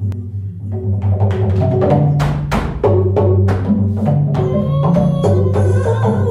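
Wooden slit drum struck with mallets, beginning about a second in and going at roughly three strikes a second, each note ringing briefly, over a low, repeating droning pattern.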